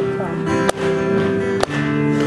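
Acoustic guitar strummed live, chords ringing, with two sharp strums about a second apart.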